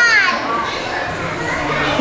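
Busy shop background of children's voices and crowd chatter. One high voice falls in pitch at the very start.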